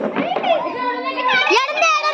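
Several excited, high-pitched voices of women and a child calling out over one another, loudest in the second half, as the players scramble for the chairs in a game of musical chairs.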